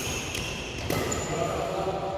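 Badminton rally: racket strings striking the shuttlecock with sharp hits, and sneakers squeaking on the hard court floor.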